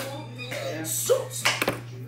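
Faint, indistinct voice sounds over a steady low hum, with a couple of sharp taps about one and a half seconds in.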